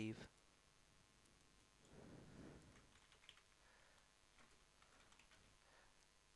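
Faint computer keyboard typing and mouse clicks, a scatter of light taps over near silence, with a soft rustle about two seconds in.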